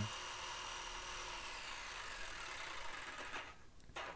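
DeWalt jigsaw cutting a handle cutout in a wood panel, set to a slow speed and low orbital action for a clean cut. The cutting noise is steady, stops for about half a second near the end, then starts again.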